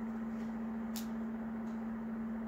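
A steady hum under quiet room tone, with a brief sharp click about a second in as baseball cards are handled.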